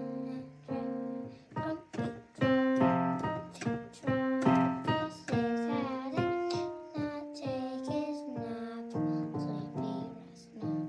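Digital piano keyboard played by a child: a simple tune of single melody notes over longer-held lower notes.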